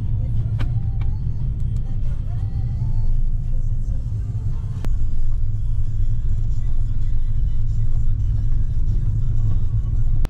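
Steady low rumble of a small car driving slowly, heard from inside the cabin, with faint music underneath.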